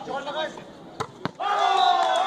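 A volleyball smacked twice in quick succession, two sharp hits about a quarter second apart about a second in, followed by sustained shouting from players and onlookers.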